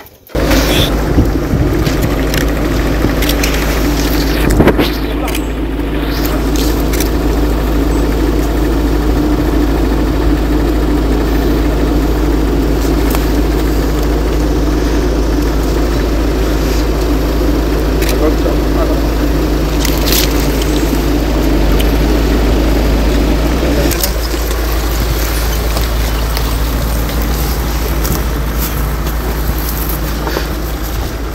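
A loud, steady low rumble with indistinct voices, cutting in suddenly and holding at an even level, easing slightly near the end.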